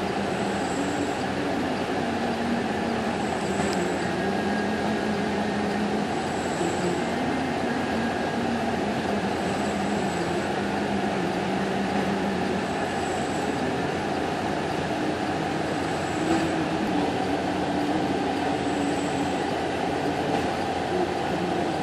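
Diesel engines of a self-propelled modular transporter's power pack units running steadily: a dense mechanical drone whose low tones waver slowly in pitch. A short, faint high beep repeats about every three seconds.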